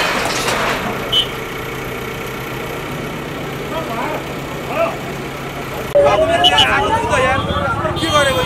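Diesel engine of an Escorts Digmax II backhoe loader running steadily while its bucket works at a shop's metal awning frame, with a brief clink about a second in. About six seconds in, crowd voices and a siren wail rise in loudly.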